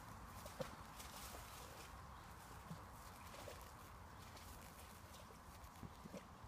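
Near silence: faint outdoor background with a few soft, scattered taps.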